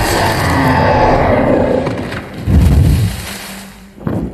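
Film sound effects of a giant flying creature crashing through a forest canopy: a dense rush of wood splintering and branches breaking, with a deep low rumble about two and a half seconds in, fading toward the end.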